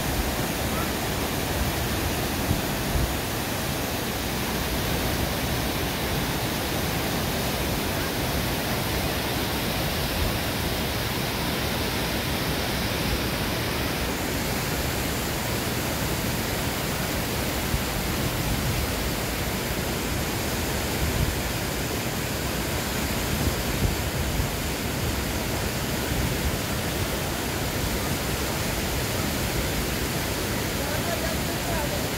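Steady rushing of a mountain waterfall and a stream cascading over rocks.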